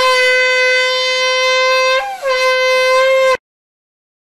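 Conch shell blown as a horn: one loud, steady held note, broken off about two seconds in, then a second shorter note that cuts off suddenly.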